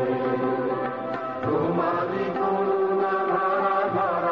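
Bengali devotional song: a group of voices sing long held notes together over instrumental accompaniment, with a short dip in loudness a little over a second in.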